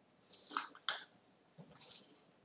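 A dove fluttering inside a wire cage: two short flurries of wingbeats and scrabbling against the wire, one about half a second in and another near the end.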